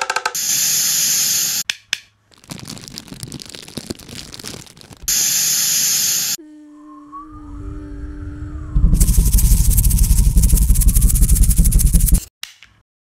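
Sound-collage soundtrack: loud bursts of hissing noise that cut in and out abruptly, then a quieter stretch of steady low hum tones with a thin tone wavering up and down, then a loud, dense rushing noise with a heavy low rumble over the last few seconds that stops suddenly.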